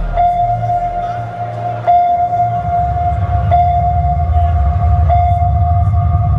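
Electronic show-intro music through a large arena's sound system: a horn-like synth tone sounding about every second and a half and holding each time, over a deep, rumbling bass.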